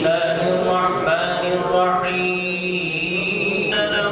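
A man's voice chanting Arabic religious recitation in long, drawn-out melodic notes, holding one note for well over a second in the second half.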